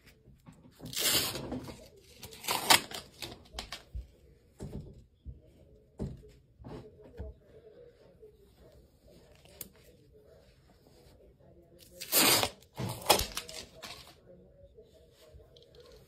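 Adhesive lint roller rolled over a rabbit's fur, the sticky sheet crackling and peeling off the coat in a few short, loud bursts, mainly about a second in, near three seconds and again twelve to thirteen seconds in.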